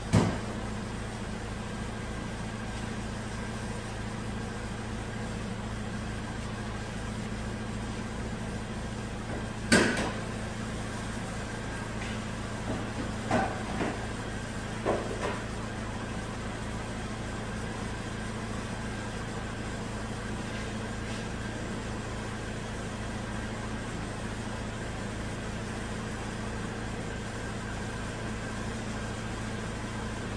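Chevrolet Malibu Hybrid's 2.4-litre four-cylinder engine idling steadily at about 620 rpm. Two sharp knocks, one at the very start and the loudest about ten seconds in, and a few lighter clatters a few seconds later.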